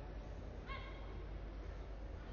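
Steady background hum of a badminton arena between points, with one brief high-pitched squeak-like sound about two-thirds of a second in.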